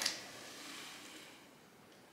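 Faint room tone: a soft, even hiss that fades away over the first second and a half.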